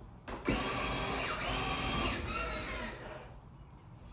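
Battery-powered Paw Patrol fire truck ride-on toy driving across a hard floor: its electric motor and gearbox whir, starting shortly in, running about three seconds with the pitch shifting as it moves, then fading out.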